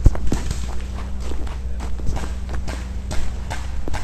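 Footsteps of a player moving quickly across a paintball field: irregular sharp steps and knocks, several a second, over a steady low hum.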